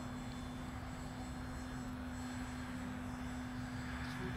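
Electric motor and propeller of a Ben Buckle Junior 60 RC model plane in flight under half throttle, a steady drone on one pitch, with wind rumbling on the microphone.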